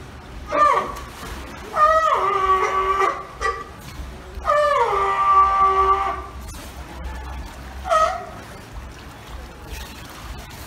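A seal calling: a short call, then two long calls that drop in pitch at the start and then hold steady, and another short call near the end.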